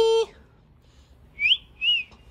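Two short rising whistles about half a second apart, a person whistling to call the cat. They come after the tail of a long held vocal note that ends just after the start.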